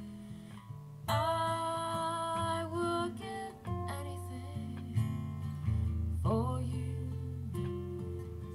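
Two acoustic guitars strumming and picking a slow ballad, with a woman's voice singing long held notes over them, a held note starting about a second in and another rising in around six seconds.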